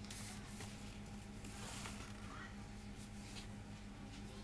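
Faint crinkling of a paper flour bag as self-raising flour is tipped out of it, over a steady low background hum.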